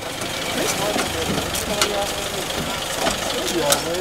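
A vehicle engine running under a steady hubbub of indistinct voices, with a few sharp clicks.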